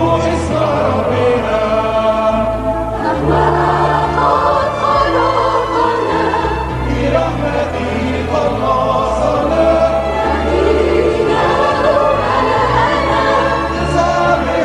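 A mixed choir of men and women singing an Arabic hymn in harmony, with the words "in His mercy He saved us" midway, over held low bass notes that change every second or two.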